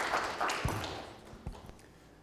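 Audience applause dying away over the first second, with two low thuds about a second apart as it fades.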